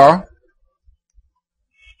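A man's voice breaks off, followed by a few faint, sparse clicks of typing on a computer keyboard.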